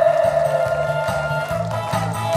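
Backing music starting over the stage PA: a held high note over a bass line stepping in a steady beat, with guitar.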